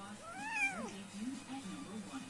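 A very young, hungry kitten gives one meow that rises and falls in pitch, lasting about two-thirds of a second.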